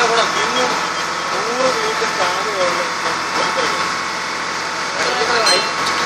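A boat's engine running steadily without a break, with people's voices heard intermittently over it.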